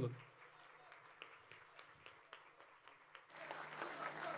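Audience applause, faint with scattered single claps at first, then growing louder and denser a little over three seconds in.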